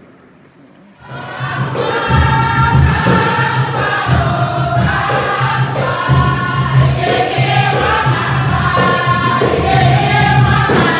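Group of voices singing a Garifuna song together as the procession enters, starting about a second in after a brief quiet, with a strong low tone running underneath.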